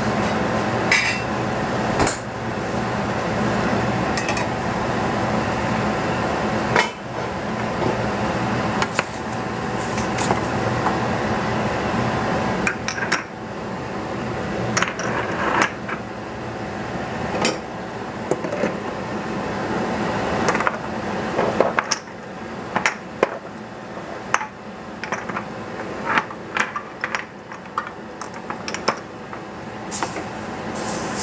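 A metal spoon clinking and scraping against a stainless steel saucepan as mushrooms are stirred, with knocks of metal pans and lids, over a steady rushing noise from the stove.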